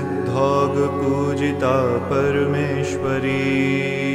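Devotional Sanskrit chant to the goddess Durga sung over a steady drone, the voice drawn out in long, ornamented wavering notes.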